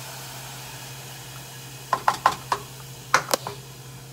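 Saucepan of toasted quinoa and milk on the stove giving a steady sizzle, then two quick clusters of sharp knocks about two and three seconds in: a wooden spoon and cup tapping against the metal saucepan.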